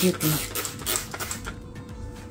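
Trigger spray bottle squirting cleaner onto a stainless-steel gas hob: several quick hissing squirts in the first second and a half.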